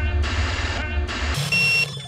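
Music with a heavy bass line breaks off about a second and a half in, and a short, loud electronic beep sounds in its place.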